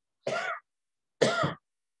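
A man coughing twice, two short coughs about a second apart: the cough of someone who thinks he may have a cold.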